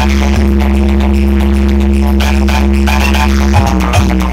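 Electronic dance music played very loud through a DJ competition rig's large speaker stacks. A steady deep bass drone holds, then a regular thumping beat comes in just before the end.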